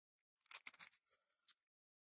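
Faint clicks and scrapes of a graphite bushing being slid onto a dishwasher pump's metal shaft by hand: a quick cluster of small clicks about half a second in, and one more click near the middle.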